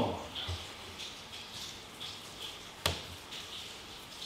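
Faint scraping and handling noises from work on wooden stairs, with a couple of soft knocks early and one sharp click about three seconds in.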